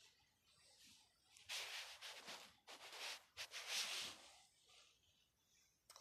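Faint rustling and rubbing noise in three short bursts, starting about a second and a half in and ending by about four seconds.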